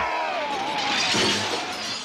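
A shattering crash in a scuffle, with a man's long wavering cry of "oh" over it.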